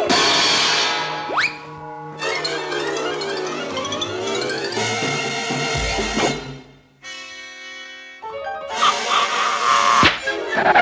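Orchestral cartoon score playing under the action, with a quick rising whistle-like glide about a second and a half in. The music dips briefly near seven seconds and swells again near the end.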